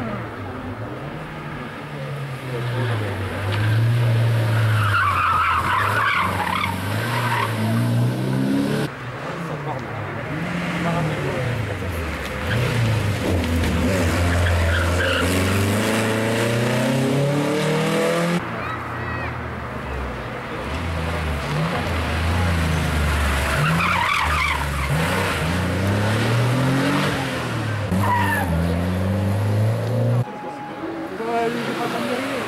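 Rally cars' engines revving hard and rising in pitch, dropping back at each gear change and under braking, over several passes. Tyres squeal through the corner about five seconds in and again near 24 seconds.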